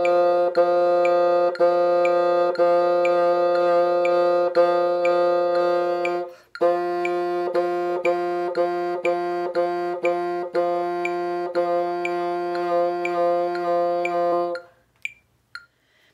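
Bassoon playing the rhythm of an audition excerpt on a single repeated F, tongued in steady eighth-note pulses at about two a second, over a metronome ticking at 60. A brief break for breath comes about six seconds in, and the playing stops about a second and a half before the end.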